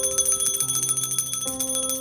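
Altar bells shaken in a rapid, continuous high jingling peal at the consecration of the Mass, marking the priest's reverence to the consecrated host. Sustained keyboard chords play underneath.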